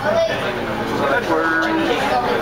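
People talking on board a moving Canada Line train, with the train's steady running hum underneath.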